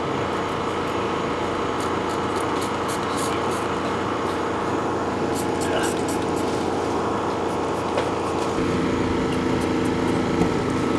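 Steady hum of a running machine, with a few short high hisses of a spray bottle squirting soapy water onto air-line fittings to check them for leaks.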